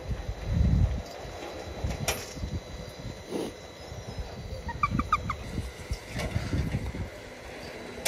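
Uneven low rumbling gusts on the microphone on an open ski slope, with a few faint clicks and a quick run of four short high chirps just before five seconds in.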